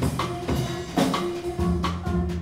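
Live jazz band music led by a drum kit played with sticks, with steady strokes about every half second over sustained low notes.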